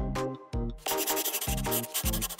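Pencil scratching across paper in quick strokes, strongest in the middle, over background music with a steady bass beat.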